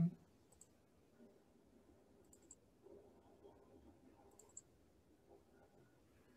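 A few faint computer mouse clicks, some in quick pairs, over near-silent room tone.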